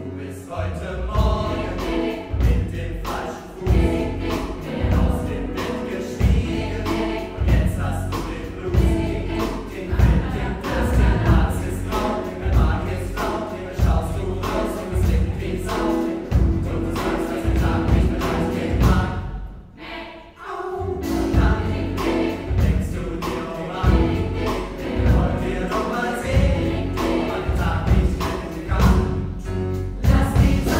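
Large mixed choir singing an upbeat pop song with piano, bass and drum kit, the drums keeping a steady beat. A little over two-thirds of the way through, the music breaks off for about a second, then the choir and band come back in.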